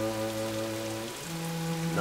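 Steady rain falling, under a sustained chord of background score whose chord changes a little past a second in.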